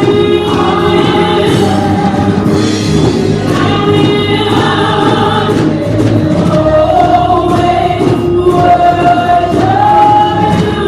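Gospel praise team of women singing together in harmony through microphones, with live band accompaniment including guitar.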